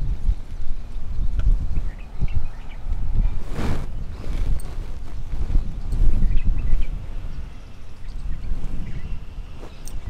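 Wind buffeting the microphone outdoors: an uneven low rumble that swells and drops, with a brief louder rush about three and a half seconds in. Faint short bird chirps sound now and then above it.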